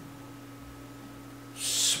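A steady low hum in a pause between spoken words. Near the end a man's voice starts the next word with a hissing 's'.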